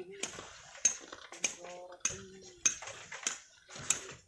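Sharp clinking taps, like metal striking stone, repeating evenly about every 0.6 s, with a short voice sound in the middle.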